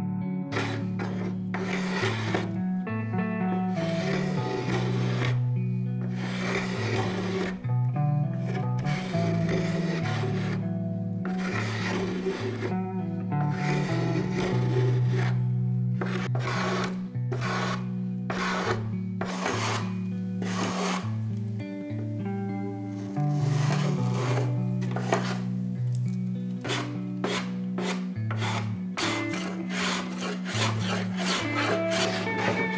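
Repeated scraping strokes of hand tools shaving and sanding an epoxy-coated wooden stringer, with 80-grit sandpaper and a small bench plane, in quick irregular strokes. Background music with a steady bass line plays under it.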